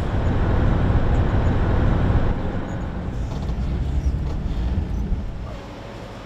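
Road noise inside a moving vehicle's cabin at speed: a deep steady rumble with tyre hiss above it, dropping away about five and a half seconds in.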